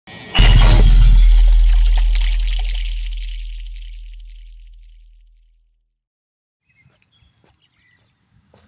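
Logo sting sound effect: a sudden heavy boom with a bright crash about half a second in, ringing out and fading away over about five seconds.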